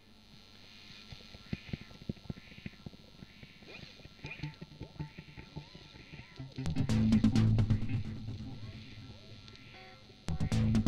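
Footfalls of a crowd running on wet sand, a quick uneven patter of many steps. About six and a half seconds in, a loud soundtrack music passage comes in over them and slowly fades.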